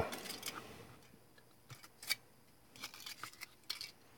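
Faint crinkling and clicking of a thin aluminium-foil car shell being handled in the fingers and set down on a cutting mat: a few scattered light ticks with short quiet gaps between them.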